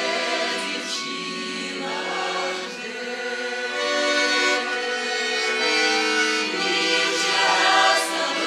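Women's voices singing a Russian folk song together, with a small accordion playing along.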